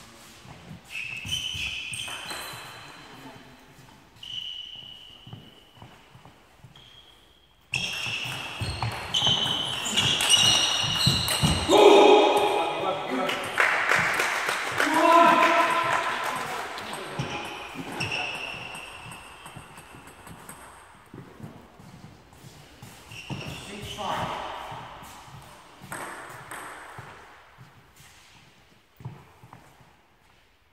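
Table tennis ball bouncing and pinging in a reverberant sports hall, with indistinct voices, louder from about a third of the way in until past the middle.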